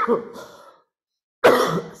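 A person coughs once near the end, a sudden harsh burst. Before it a spoken phrase trails off into a moment of complete silence.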